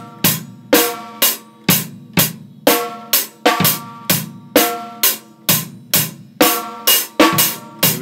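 Acoustic drum kit played with sticks: a steady beat of sharp snare and bass-drum strikes, about two strong hits a second with lighter hits between, the drums ringing briefly after each stroke.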